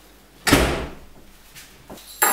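Apartment front door pushed shut with a loud thud about half a second in, fading quickly, followed by a faint click near the end as it settles or latches.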